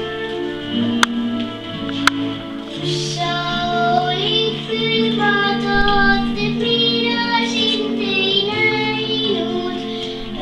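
A young girl singing a song over a recorded instrumental backing track played from a portable stereo, her voice coming in about three seconds in. Two sharp clicks sound about one and two seconds in.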